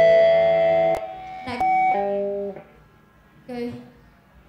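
Amplified electric guitar chord ringing out and cut off about a second in, followed by a few short held guitar notes and a brief voice near the end as the song finishes.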